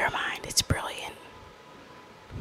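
A woman speaking a few words softly for about the first second, then quiet room tone.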